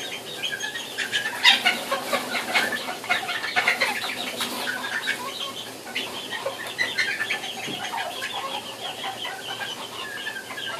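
Serama bantam chickens clucking and chirping in a dense, continuous stream of short calls, with brief wing flapping mixed in.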